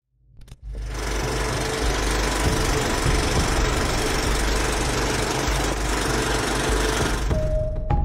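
Film projector sound effect: a steady mechanical clatter with hiss that starts after a brief silence and runs on. Near the end a held tone comes in, then a slightly higher one.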